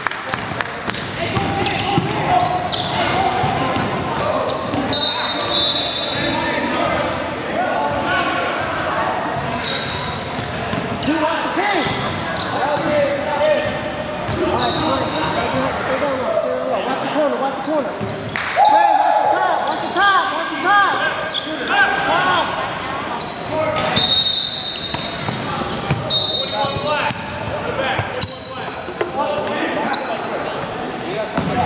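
Indoor basketball game on a hardwood court: a ball bouncing, sneakers squeaking and players calling out, all echoing in a large gym. Short high squeaks come a few times, most around the middle and near the end.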